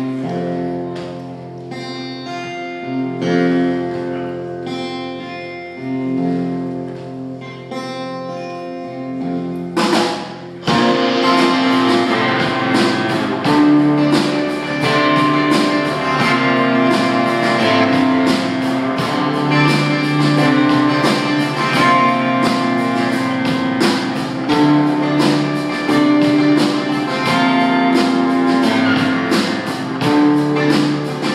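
Live rock band starting a song: long held cello notes under picked electric guitar, then drums and the full band come in about ten seconds in and carry on at a steady beat.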